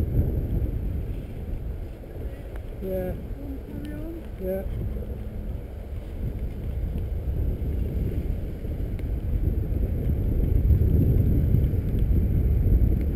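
Wind rumbling over the microphone of a camera on a moving bicycle, with road noise, easing off in the middle and building again towards the end. A brief voice is heard about three to four and a half seconds in.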